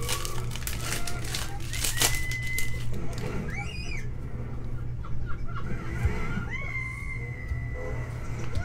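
A trading-card pack wrapper being torn open, crinkling and crackling over the first two seconds or so, then the stack of cards rustling as it is thumbed through. A low steady hum runs underneath, and short whistle-like tones come in about two seconds in and again near the end.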